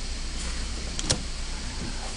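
Steady low hum and hiss of the recording room's background noise, with one faint click about a second in.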